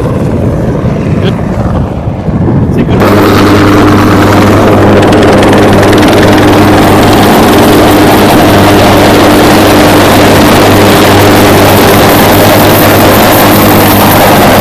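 UH-1Y Venom helicopter's twin turboshaft engines and rotors running. About three seconds in, the sound jumps to a loud, close, steady drone: a deep even hum over a rushing hiss.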